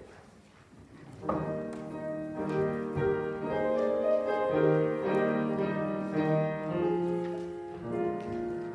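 Piano playing the introduction to a congregational hymn, coming in about a second in with full chords after a brief hush.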